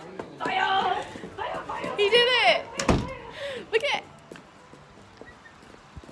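Excited voices and a high laughing call, then a door banging shut about three seconds in.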